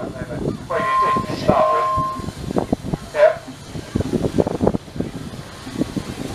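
A steam engine's whistle blows in two short blasts about a second in. Steam hiss and background voices are heard with it.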